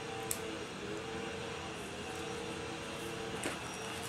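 A steady background hum, with one sharp click about a third of a second in as the pistol light's switch is pressed, and a faint handling sound near the end.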